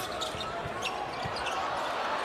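A basketball bouncing several times on a hardwood court as a player dribbles during live play, over steady arena noise.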